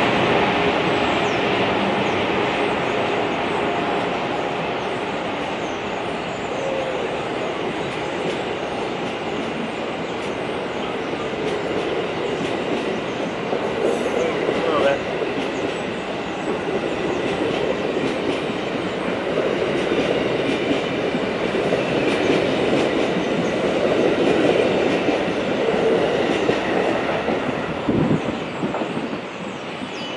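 Amtrak Amfleet passenger cars rolling past along the platform track: a continuous loud rumble of steel wheels on rail, with some clicking over the rail joints. It tails off near the end as the last car clears.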